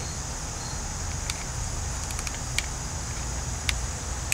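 Outdoor background with a steady, high insect chorus over a low rumble, with a few faint ticks.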